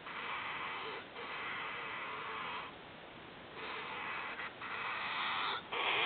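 Gemmy 'Grand Master Blaster' dancing hamster toy playing its sound clip on weak, worn-out original batteries: a slowed-down, distorted, low 'right about now' that comes out as a hissy, drawn-out groan. It repeats in several stretches of a second or so with short breaks, loudest near the end.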